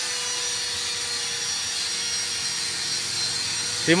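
Steady background noise with a faint, even hum underneath and no distinct knocks or strokes.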